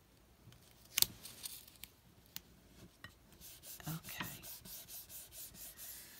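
Fingers rubbing a paper sticker down onto a planner page: a sharp tap about a second in, then a run of quick, light scratchy rubbing strokes, several a second, from about halfway through.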